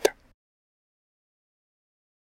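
The tail of a spoken word in the first instant, then dead silence.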